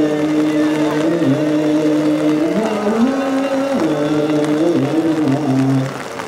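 A man's voice chanting Ethiopian Orthodox liturgical chant through a microphone, holding long notes that step up and down in pitch. The phrase ends just at the end.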